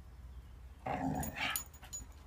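A dog gives one short, muffled growl-like bark with a rubber Kong toy held in its mouth, about a second in, followed by a few light clicks.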